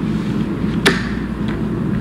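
A single sharp click a little under a second in, over a steady low room rumble.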